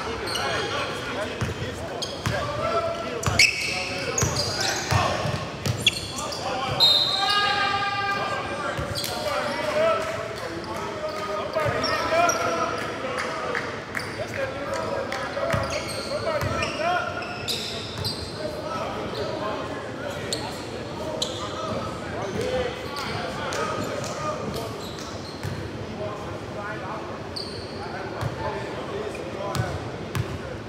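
A basketball bouncing on a hardwood gym floor in scattered knocks, with players' and spectators' voices echoing in the large gym.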